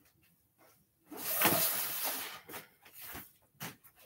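Loud rustling of a large wrapped flat item being carried and handled, starting about a second in and lasting about a second, then a few shorter, fainter handling noises.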